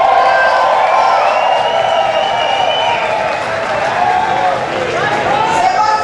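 Club audience cheering and shouting, many voices at once with high shrieks over the top, loudest in the first second or two.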